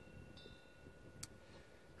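Near silence with faint, steady bell-like ringing tones and a single short click just past a second in.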